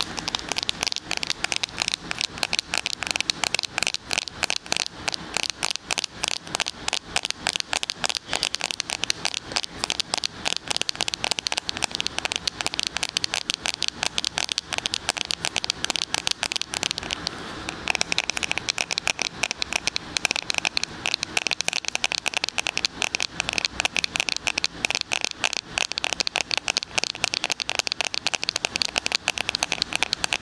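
Rapid, continuous finger tapping on a smartphone and its case, held right up against the ear of a binaural microphone. The taps come many to the second, with a brief change in their tone a little past halfway.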